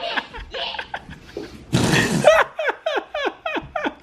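Laughter in a run of short 'ha' pulses, each falling in pitch, about four a second, with a loud breathy burst about two seconds in.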